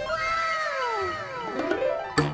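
A comic pitched sound effect: a tone with overtones glides down over about a second, and a second tone rises near the end.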